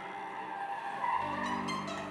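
Improvised experimental music of layered held tones; a low sustained drone comes in about a second in.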